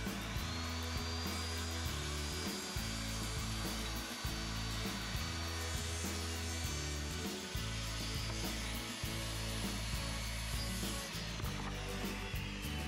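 Corded circular saw cutting across a 2x8 board, its motor whine held steady through the cut and winding down near the end as the saw is lifted off.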